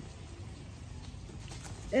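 Quiet room background with faint handling of stacked photo albums, then a woman's voice saying a word with a falling pitch right at the end.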